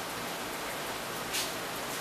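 Steady even hiss with no words, with a brief rustle about one and a half seconds in.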